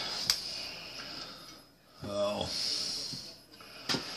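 Knife cutting potatoes into wedges on a plastic cutting board, with a sharp tap just after the start and another near the end. About halfway through, a man's short wordless vocal sound.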